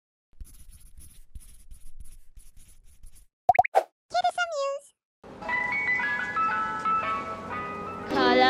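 Animated logo sting: a run of light, evenly spaced ticks, then a few quick pitch sweeps and a short high voice call that falls in pitch. From about five seconds in, a chiming ice-cream-van style melody of single stepping notes plays.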